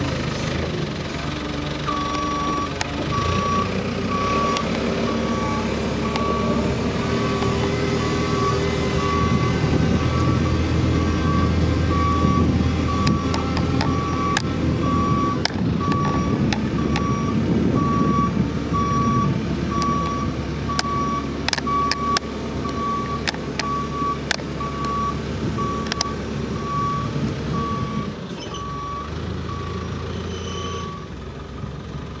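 A JCB 535-140 telehandler's diesel engine running under way, with its reversing alarm beeping in an even, steady rhythm from about two seconds in until near the end. Scattered sharp clicks or knocks come through the middle.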